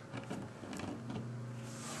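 Faint handling of plastic action figures as they are set down on a tabletop, with a few light ticks in the first second, over a steady low hum.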